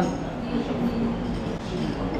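Steady low rumble of restaurant room noise, with a faint hum about halfway through.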